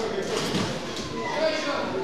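Indistinct voices shouting in a large, echoing sports hall, with a couple of sharp knocks, one near the start and one about a second in.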